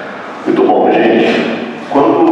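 A man speaking into a handheld microphone over a hall's sound system, his voice slightly hoarse from a cold, starting after a brief pause and stopping again just before the end.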